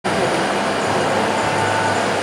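Steady running noise of a stamping press and workshop machinery, an even whir with a low hum underneath.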